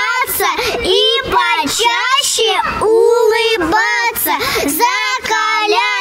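Two young girls singing a short verse together into a microphone, in held, sing-song phrases.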